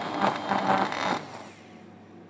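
Small electric motor frothing seaweed and shiitake juice into a foam (a culinary 'air'), with a steady hum and bubbling. It stops a little over a second in.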